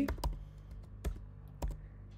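Typing on a computer keyboard: several separate keystroke clicks at an uneven pace, over a faint steady low hum.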